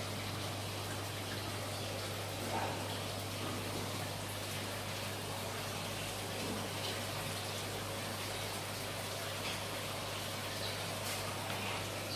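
Saltwater aquarium running: a steady rush of circulating water over a constant low hum.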